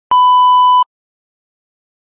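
A single steady high-pitched test-tone beep of the kind played with TV colour bars, lasting under a second and cutting off suddenly.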